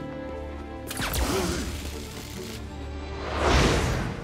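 Film score with held orchestral notes, cut through about a second in by a sudden crash that dies away over a second or so, then a swelling whoosh that peaks near the end.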